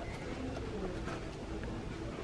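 Faint background of a quiet shop: a steady low hum with a few soft, scattered tones.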